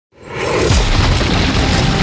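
Cinematic sound-design boom: a deep, rumbling hit that swells up from silence within the first half second and stays loud, with music beneath it.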